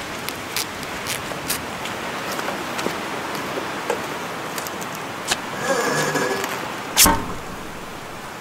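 Steady rain with scattered drips. About five and a half seconds in there is a brief squeaky scrape, then a sharp thump about a second later.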